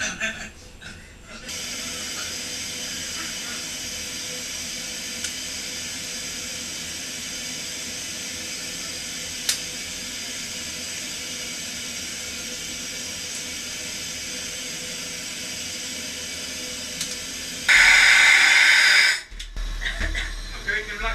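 Steady hiss of air venting from a hyperbaric dive chamber as it is decompressed to a shallower stop. Near the end it turns much louder for about a second and a half, then cuts off suddenly.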